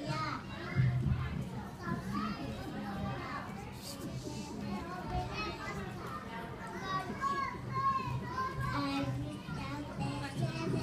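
Hubbub of many young children's voices talking and calling out at once.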